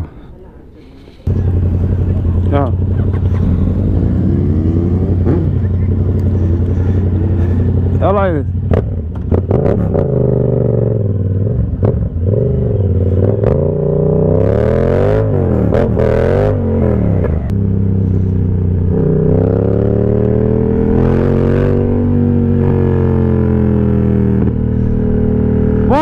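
Yamaha MT motorcycle engine, heard from the rider's seat. It comes in suddenly about a second in and idles steadily, then from about eight seconds on it rises and falls in pitch again and again as the bike is revved, pulls away and accelerates through the gears.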